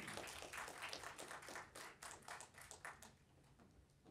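Light, scattered applause from a small audience, dying away about three seconds in.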